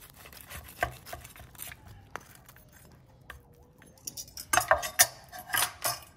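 Knife cutting through crisp roast pork belly crackling on a wooden board: a run of sharp crunches and cracks, scattered at first, then thicker and loudest over the last second and a half, with the light clink of metal tongs and knife.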